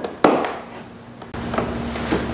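A sharp plastic snap about a quarter second in, then a lighter click, as a plastic push-in retaining clip is pressed home to lock the grille to the bumper cover. About a second of handling noise follows, with the hands on the plastic panel.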